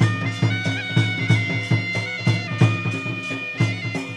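Danda Nacha music: a double-reed shawm of the mahuri type holds long, steady notes over a drum beating about three strokes a second.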